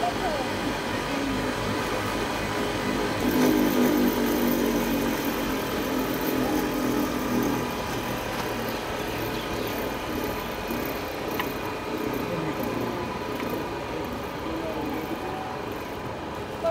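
Steady background din with indistinct voices talking, loudest a few seconds in, over a continuous mechanical running sound from a cotton candy machine's spinning head.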